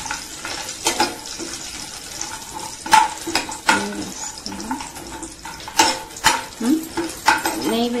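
Cashews and almonds frying in a metal pan, stirred with a steel spoon: a light sizzle under the spoon's scrapes and sharp clicks against the pan, which come every second or so at irregular times.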